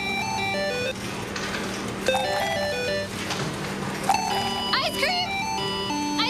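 Ice-cream-truck-style jingle music: a short chiming melody of stepped notes that repeats about every two seconds over a steady low drone.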